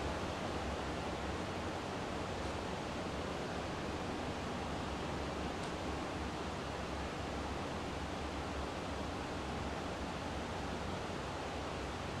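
Steady low-level hiss of room tone, with a faint low hum beneath it; nothing else happens.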